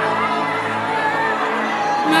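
Live gospel worship music: steady held chords from the band between sung lines, with crowd voices underneath.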